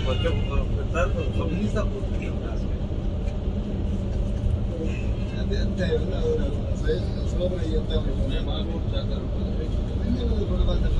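Yutong Nova coach driving at speed, heard from inside the cabin near the driver: a steady low drone of engine and road noise. Voices talk faintly in the background.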